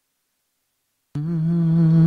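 After about a second of silence, a voice humming a long held note starts suddenly. It is the opening of the programme's voice-only theme tune.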